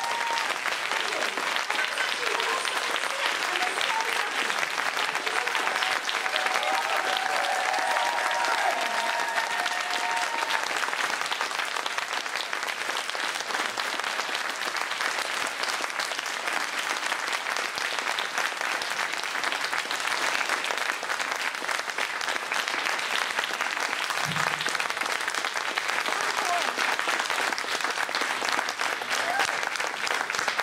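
Audience applauding steadily after a live song ends, with a few voices calling out over the clapping in the first ten seconds or so.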